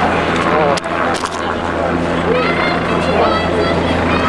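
A steady, low engine-like drone under scattered voices, with a few sharp clicks about a second in.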